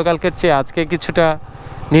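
A voice talking over a motorcycle engine running at low road speed, the speech pausing for a moment near the end while the engine goes on.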